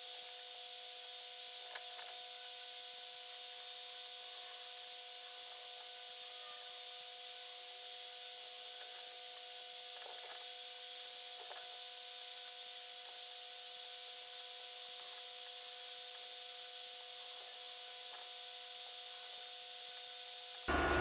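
Faint steady electrical hum with several fixed tones over a constant high hiss, broken only by a few faint light ticks.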